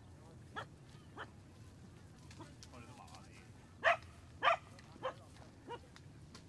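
A dog barking, six short barks in an uneven series, the loudest two about four seconds in.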